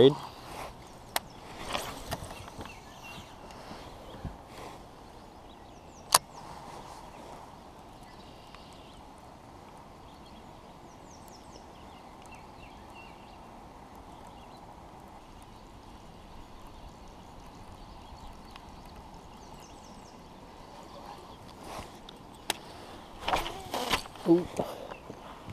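Quiet open-air background hiss broken by a few sharp clicks and knocks from hands working a baitcasting reel and rod, the loudest about six seconds in, with faint high chirps now and then.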